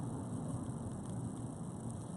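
Quiet room tone: a low, steady hum with no distinct sounds standing out.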